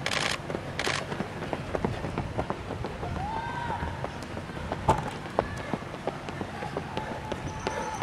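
Footfalls of several race runners on an asphalt road, short irregular steps as they pass close by, over a faint murmur of distant voices.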